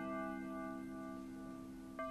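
Quorum bell: a slow chiming keyboard melody played to summon members for a quorum count. One chord is held and slowly fades, and the next notes strike at the very end.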